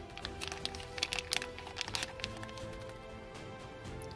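Thin plastic zip-lock bag crinkling and crackling as a coin capsule is handled and pulled out of it, over steady background music. The crackles are dense for the first two seconds and then thin out.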